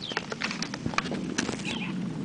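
Hard-soled shoes clicking in irregular footsteps on stone pavement, with a small bird calling in short falling chirps over them.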